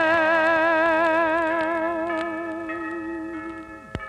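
A tenor holding one long sung note with a steady vibrato over sustained orchestral accompaniment, on a 1940s radio broadcast recording. The note drops away just before the end with a short click.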